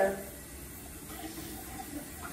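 Faint, steady running water at a bathroom sink, as from a tap left running.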